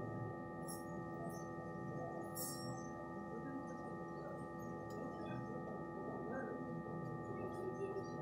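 A steady whine of several held tones at once, unchanging, over faint low background noise, with a few light ticks.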